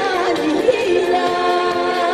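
A woman singing into a handheld microphone over musical accompaniment: a falling phrase, then one long held note in the second half.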